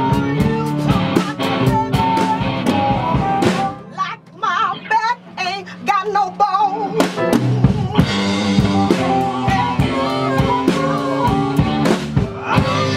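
Live electric blues band playing: electric guitar, bass, keyboards and drum kit. About four seconds in the band drops back to a brief break, then comes in full again a couple of seconds later.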